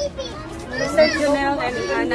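Several people's voices talking and calling out over one another, lively and high-pitched.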